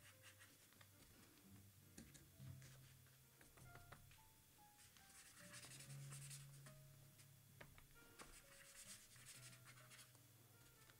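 Faint swishing of a water brush's bristles across paper as watercolour is laid on in short strokes, over quiet background music of slow, held notes.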